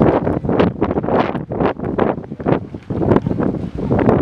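Loud wind buffeting the microphone in uneven gusts.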